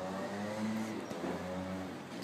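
Road traffic: a car engine running on the street, a steady low hum.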